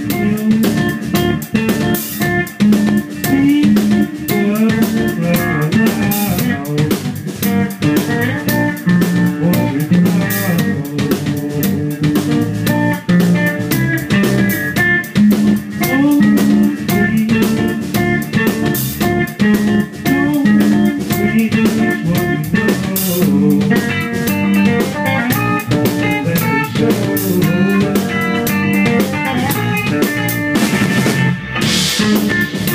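A rock band playing an instrumental passage together: guitar, bass guitar and drum kit, with drum hits running throughout.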